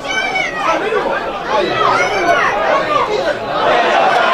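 Several voices shouting and talking over one another at a football match, the loud, excited chatter of spectators or players during an attack.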